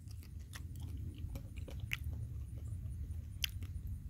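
A person chewing a bite of ripe fig, with small soft clicks scattered all through it over a low, steady rumble.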